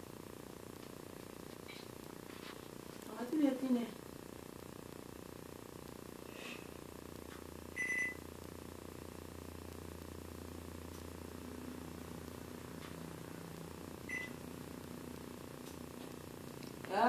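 Over-the-range microwave's keypad beeping: one clear electronic beep about eight seconds in and a shorter, fainter one near the end. A low steady hum rises for a few seconds in the middle.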